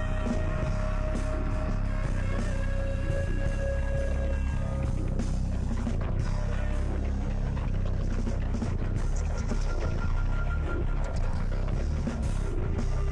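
Live improvised rock band playing, with cello, keyboards, guitar, bass and drums: a held note with overtones fades about halfway through and a higher held note enters near the end, over a dense bass and steady drum hits.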